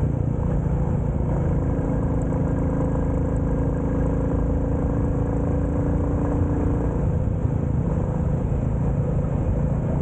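A 350 motorcycle's engine running at a steady cruise, its pitch holding even, over low road and wind rumble.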